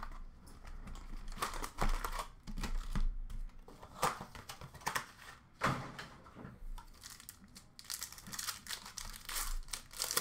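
Sports card packs and their cardboard hobby box being handled, the pack wrappers crinkling and rustling in short, irregular bouts.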